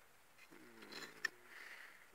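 A man's short, low, wordless hum of hesitation, faint, followed by a single small click and a soft rustle.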